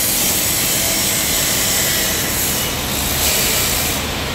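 Abrasive chop saw cutting through a metal bar, its spinning cut-off disc grinding steadily with a strong high-pitched rasp.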